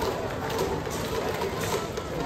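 Baseball stadium crowd: many overlapping voices from the stands, steady in level.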